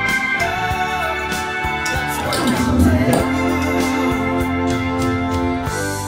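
1969 Hammond B3 organ holding sustained chords, played along with a recorded band track with drum hits running through it.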